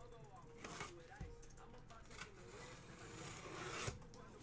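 A blade cutting the tape on a sealed cardboard card case: a few short scratches, then a longer hissing scrape that builds near the end.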